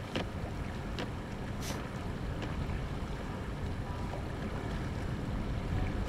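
Steady low rumble of a boat's engine with wind, and a few faint clicks in the first two seconds.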